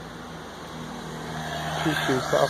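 Steady low mechanical hum, growing slightly louder toward the end, with a man's voice starting just before the end.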